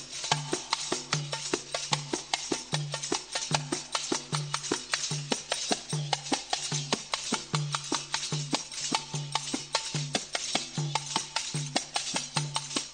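Darbuka (derbake) drum solo. Deep bass strokes repeat less than a second apart, with rapid, crisp, sharp strikes filling the beats between them.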